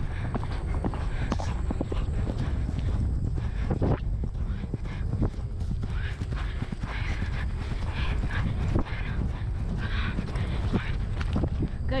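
A ridden horse's hoofbeats on grass turf at speed across a cross-country field, under a constant low rumble of wind on a helmet-mounted microphone.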